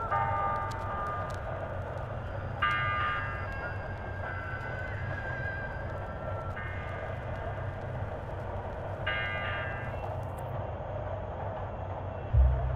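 Steady low rumble like a subway train, under sparse held electronic notes. Two brighter, ringing chords come about 3 seconds and 9 seconds in.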